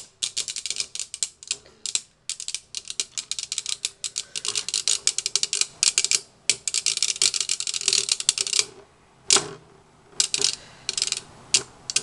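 Two knockoff metal-wheeled Beyblade spinning tops battling in a clear dish: a rapid, rattling clatter of clicks as they collide and skitter. It breaks off briefly a couple of times and goes nearly quiet for about a second some three-quarters of the way through, then picks up again.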